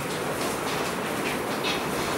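Steady room noise, with one or two faint short scratches of a pen writing on an interactive touchscreen board near the end.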